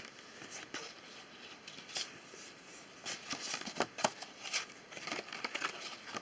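Paper and cardstock pages of a handmade flip book being handled and turned by hand: soft rustles and light taps, a few a second.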